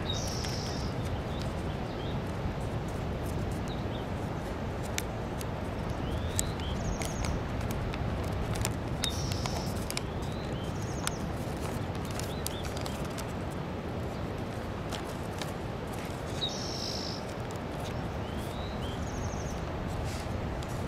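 Small birds chirping now and then, short high calls and little rising notes, over a steady outdoor hiss. Paper being folded by hand gives soft crinkles and taps throughout.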